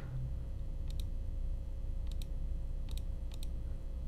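Computer mouse clicking: four pairs of short clicks, each pair about a tenth of a second apart, over a low steady hum.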